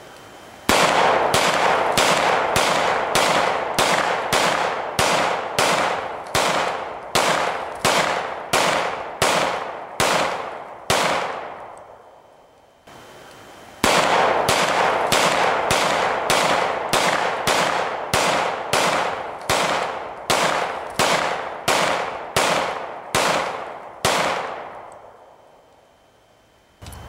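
A 9mm semi-automatic pistol fired in rapid single shots, about one every three-quarters of a second, each shot ringing off briefly. There are two long strings of shots, with a pause of a couple of seconds between them.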